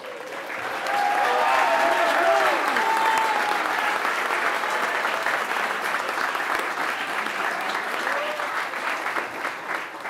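A large audience applauding: dense clapping that builds over the first second, holds steady, then eases slightly toward the end, with a few voices calling out over it.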